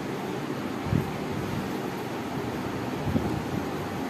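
Steady background hiss of room noise, with two soft low thumps, about a second in and again just after three seconds.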